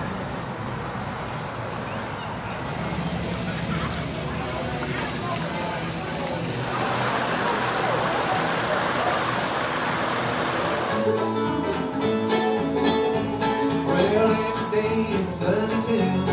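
Water running and splashing down a small rock-cascade fountain, a steady rushing hiss. About eleven seconds in, live bluegrass music cuts in: picked banjo and guitar with a steady rhythm.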